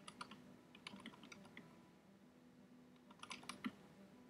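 Faint typing on a computer keyboard: short runs of keystrokes with pauses between them.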